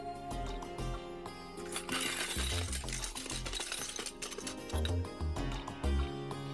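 Background music score: sustained tones over low bass beats, with a bright shimmering burst about two seconds in.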